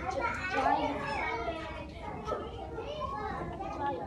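Young children's voices talking and calling out, high-pitched and overlapping, without clear words.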